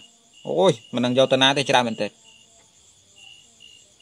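A man speaking for about a second and a half, then a pause in which a faint, high-pitched chirping repeats about three times a second, like an insect chirping in the background.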